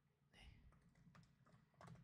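Faint computer keyboard typing: a few scattered keystrokes as a short shell command is entered.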